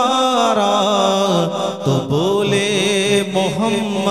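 A man singing an Urdu naat solo and unaccompanied into a handheld microphone, drawing out long melismatic notes that glide and waver, with no clear words.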